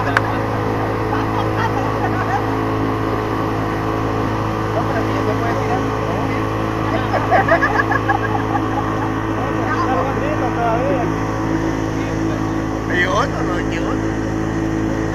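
Boat's two-stroke outboard motor running steadily under way, with passengers' voices over it.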